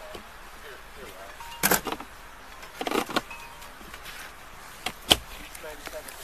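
Three short, loud bumps and scrapes, about a second and a half in, around three seconds, and just after five seconds, over faint distant voices.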